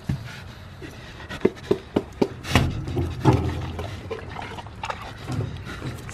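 A boar snuffling and snorting at the fence, with a few sharp clicks just before a loud snort about two and a half seconds in and another about a second later.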